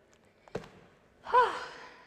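A single thud as bare feet land on the floor mat coming down from a handstand, followed about a second later by a loud, voiced sigh of exertion that falls away in pitch.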